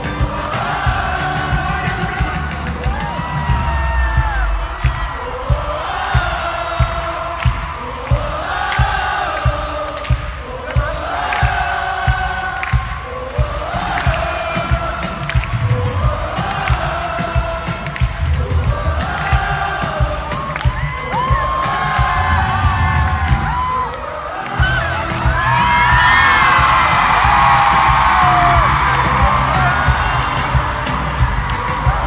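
Live pop music at an arena concert, heard from among the audience: a lead vocal in short repeated phrases over a steady drum beat. About 24 seconds in the music dips briefly, then comes back louder with the crowd cheering and singing along.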